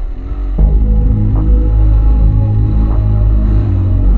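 Background music: an instrumental stretch of a song with a steady beat, its deep bass coming in louder about half a second in.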